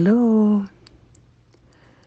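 A person's voice drawing out a single word for about half a second, then a few faint clicks over low room noise.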